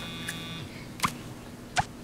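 Mobile phone text-message alert: a steady electronic beep lasting under a second, then two sharp clicks as the flip phone is handled.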